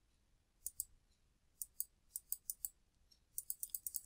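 Faint, crisp clicks of a computer mouse as a document is scrolled. The clicks come singly and in pairs at first, then in a quicker run of about six near the end.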